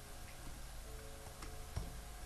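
Faint clicks of computer keyboard keys being typed, with one louder key click and thump near the end, over faint background music.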